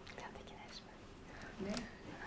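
Quiet murmured talk and whispering among a few people, with one voice a little louder near the end.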